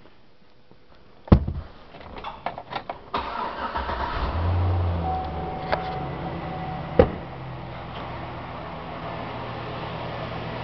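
A sharp knock and a few clicks, then a truck engine cranks briefly, catches, flares up and settles into a steady idle. Two more sharp clicks come during the idle.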